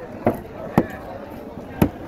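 A large curved fish-cutting knife chopping a snapper into curry pieces, striking through the fish into a wooden chopping block: three sharp chops, the last coming about a second after the second.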